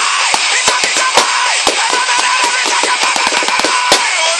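Drumsticks striking a makeshift drum kit of plastic video game and DVD cases: quick, irregular hits with a fast run of strikes about three seconds in, over a song playing in the background.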